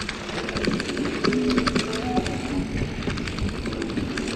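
Mountain bike rolling fast down a dry dirt and gravel trail: tyre noise over the ground with a dense, irregular patter of clicks and rattles from the bike on rough terrain.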